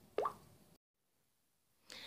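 A single short plop with a quick upward pitch sweep about a fifth of a second in, then dead silence where the recording is cut, with faint room noise coming back near the end.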